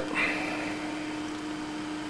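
Steady electrical hum on one low tone under a constant hiss, with a brief soft higher-pitched sound just after the start.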